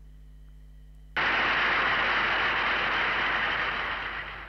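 Faint hum, then about a second in a loud, steady rushing noise starts suddenly in the soundtrack of the old 1933 speech recording being played back, easing off near the end.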